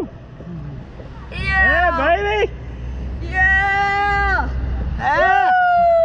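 Riders on a slingshot ride whooping in three long, high-pitched cries, the middle one held on a steady pitch, over a low wind rumble on the microphone.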